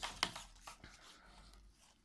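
Faint handling sounds as a tape measure is picked up and laid across a crocheted piece on a table: a couple of soft clicks near the start, then a few lighter ticks and rustles.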